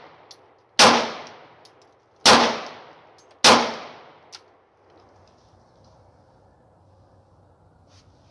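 Three pistol shots from a full-size handgun, fired about a second and a half apart, each with a short echoing tail. They are the last shots of a five-shot string.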